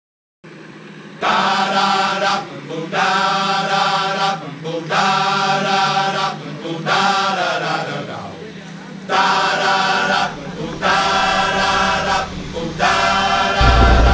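Chanting voices in repeated phrases over a steady low drone. Just before the end, the loud low running of a jet boat's engine comes in underneath.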